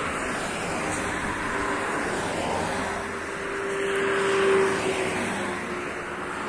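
Cars passing by on a two-lane road one after another, their tyres and engines swelling and fading. The loudest pass comes about four and a half seconds in, with a steady hum.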